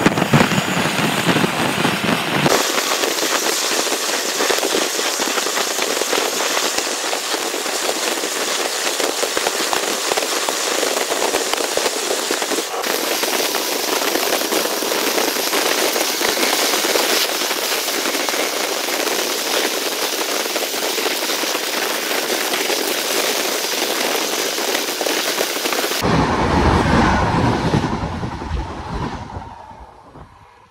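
Steady, loud rushing and crackling noise of a moving train, as heard from its open door or window. The sound changes abruptly a few times, heavier rumble comes in near the end, then it fades away.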